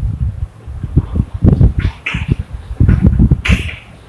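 Chalk writing on a blackboard: a quick, irregular run of low knocks and light scrapes as the chalk strokes out words.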